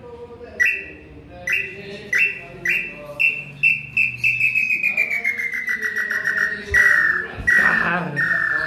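Wooden hand-blown bird call (pio) imitating the nambu pé-roxo tinamou: whistled notes that come faster and faster, running into a quick trill that slowly falls in pitch, with a few longer, louder notes near the end.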